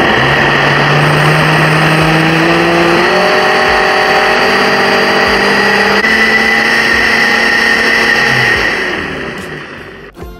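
Electric countertop blender running at full power, pulverising raw beetroot and carrot chunks in liquid into juice. The motor starts suddenly, steps up in pitch about three seconds in, then runs steadily and fades out near the end.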